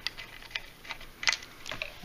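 Several light, irregular clicks and taps of brass refrigeration hose fittings and the plastic-and-metal body of an unpowered vacuum pump being handled.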